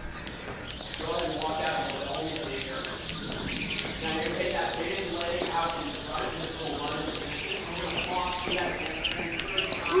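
Two jump ropes whipping and ticking against the floor in quick, even succession during double-unders, the rope passing under each jump twice. Several ticks a second, over an indistinct voice-like sound.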